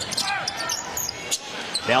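Game sounds from a basketball court in a large arena: a few sharp knocks from the ball and players' shoes on the hardwood, over low crowd noise.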